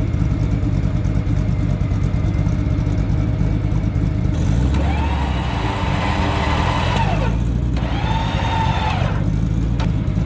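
Truck engine idling with a steady low rumble, revved up twice, about five and eight seconds in. Each rev brings a whine that rises, holds and falls away.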